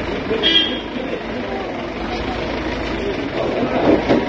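A short vehicle horn toot about half a second in, over a crowd of people talking and calling out and a vehicle engine running.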